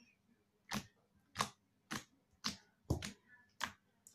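Fluffy slime made from an Elmer's slime kit being poked with a finger, giving six sharp popping clicks about every half second.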